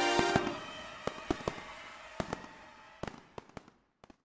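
The tail of an outro jingle fading out in the first half second, followed by scattered sharp pops and crackles, irregularly spaced, that grow fainter until they stop near the end.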